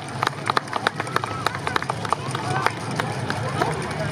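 Scattered hand-clapping from a small outdoor audience as the dance music stops, sharp irregular claps a few per second, with a few voices.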